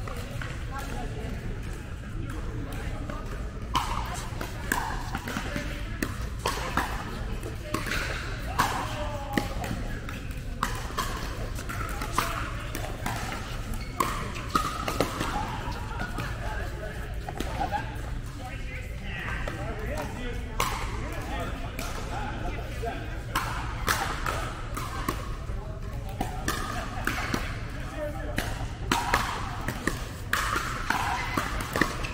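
Pickleball paddles striking a plastic pickleball during a doubles rally: sharp pops at irregular intervals, a second or two apart, echoing in a large indoor hall. Players' voices carry in the background over a steady low hum.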